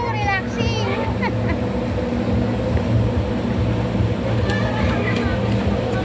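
Lazy-river water lapping and splashing around inner tubes over a steady low mechanical hum, with short bits of people's voices near the start and again near the end.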